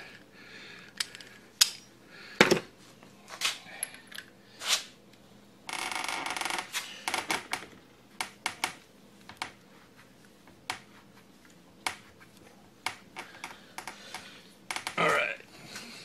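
Scattered sharp metallic clicks and knocks as the spring and top parts are fitted into a Honda Shadow fork tube, with a scraping rush lasting about a second some six seconds in.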